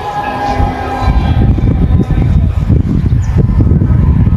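Wind buffeting the microphone: a loud, uneven low rumble that grows stronger about a second in.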